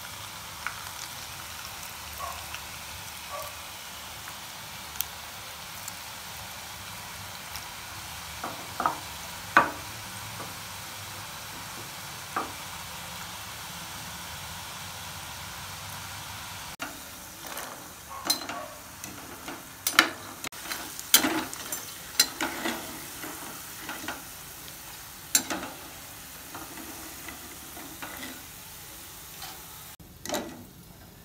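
Gram-flour-coated masala peanuts deep-frying in hot oil: a steady sizzle with occasional sharp pops and clicks, which come more often in the second half.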